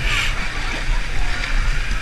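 Pool water splashing and sloshing as swimmers in mermaid monofins kick through it, over a steady low rumble, with a brighter splash right at the start.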